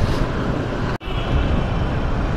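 Steady rush of wind on the microphone and road and engine noise from a motor scooter riding along. The sound cuts out for an instant about a second in.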